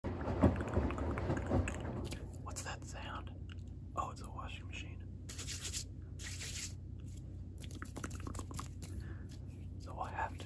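An LG Signature washing machine running with a steady low hum. Close, breathy voice sounds come over it, and there are several loud low knocks in the first two seconds.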